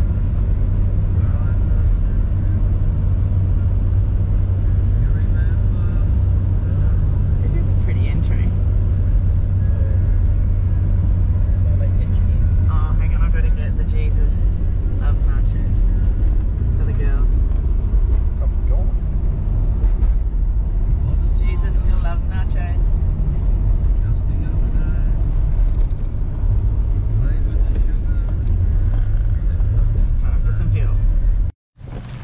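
Steady low road and engine drone heard from inside the cabin of a 4WD driving along a sealed road.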